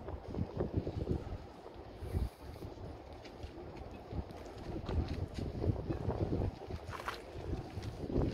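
Wind buffeting the microphone: an uneven, gusty rumble, with faint outdoor background noise beneath it.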